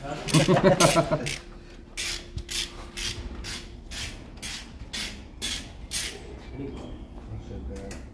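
Hand socket ratchet being worked, a steady run of sharp clicks about three a second. A voice, perhaps a laugh, is heard briefly at the start.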